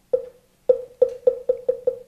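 Moktak (Korean Buddhist wooden fish) struck once, then, after a pause, in a run of strikes that come faster and faster. Each strike is a short pitched wooden knock. This accelerating roll leads into the chanting of a mantra.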